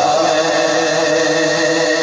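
Devotional naat chanting: a steady drone of held, chant-like notes carrying on between the lead reciter's sung lines.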